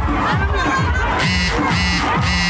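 Dance music with a steady bass beat playing loudly over a large crowd cheering and shouting, with three short shrill high notes in the second half.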